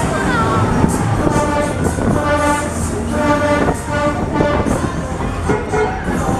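Sobema Discotrain fairground ride running at speed, its train of cars rumbling around the track, with several held tones in the middle.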